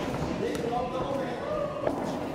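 Boxing-glove punches landing during sparring, with a sharp hit just before the end as the loudest sound, over indistinct voices calling out.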